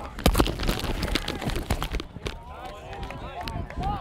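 Players' bodies and shoulder pads colliding in a pass-rush rep, picked up close on a body-worn mic as a dense clatter of knocks and rubbing for about two seconds, loudest near the start. Then several players shout over one another.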